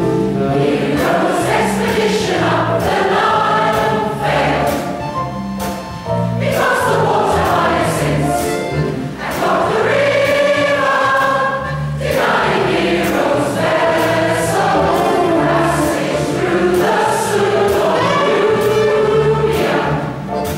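Large mixed choir of men and women singing together, with long sustained phrases.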